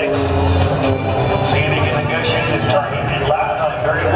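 A male race commentator's voice talking on, over a steady low hum.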